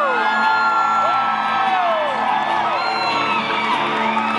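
Electric guitar playing live, with audience members whooping over it; one long rising-and-falling whoop about a second in.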